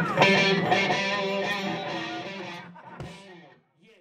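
Live band's electric guitars ringing on at the end of a blues song, fading away to silence about three and a half seconds in, with a small knock just before the end.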